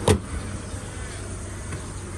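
Steady low rumble of car engines and traffic on a petrol-station forecourt, with one sharp click right at the start.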